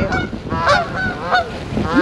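A flock of Canada geese honking in flight, several calls following one another in quick succession as the birds pass low overhead.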